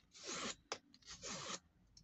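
A strip of kraft cardstock drawn hard over a bone folder to curl it. Two dry rubbing strokes about a second apart, with a light click between them.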